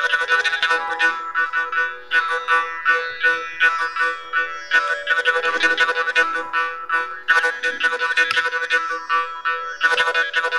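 Carnatic violin duet, the violins' sustained melody over rapid, steady mridangam strokes, with a morsing (jaw harp) twanging in the rhythm.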